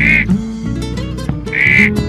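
Guitar music playing, with two short, loud, nasal duck quacks over it: one right at the start and one about a second and a half in.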